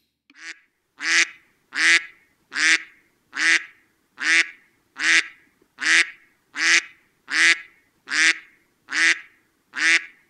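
Duck quacking over and over at an even pace, about one quack every 0.8 seconds, a dozen in all, each quack much like the last.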